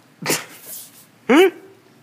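A man's vocal noises: a short, loud, noisy burst of breath, then a brief pitched 'hmm' that rises and falls.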